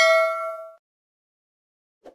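A bell-like notification ding sound effect for a subscribe-button animation: one struck chime that rings and fades away within the first second.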